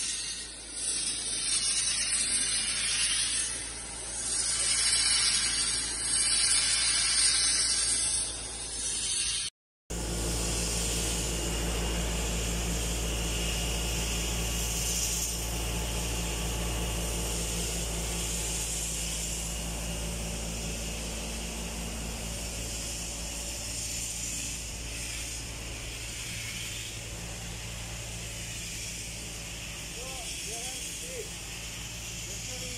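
Compressed-air sandblasting of steel pipes: a loud, rough hiss that swells and fades. It cuts out suddenly about a third of the way through, and a steady low hum with faint hiss follows.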